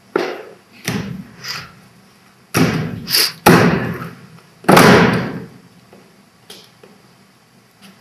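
A run of about six sudden, loud thuds and noisy bursts from a stage fight: performers' bodies and bare feet striking and landing on a wooden stage floor, one falling. The longest and loudest come near the middle.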